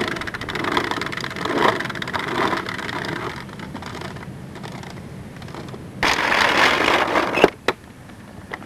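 Hard plastic wheels of a child's ride-on tricycle rattling over rough asphalt, fading as the trike rolls onto grass. About six seconds in a louder rush of noise starts, cut short by a few sharp clicks.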